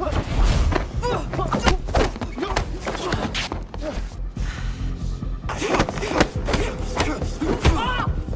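Film fight-scene soundtrack: score music under repeated punch and kick impacts, with the fighters' grunts and short cries, and a loud cry near the end.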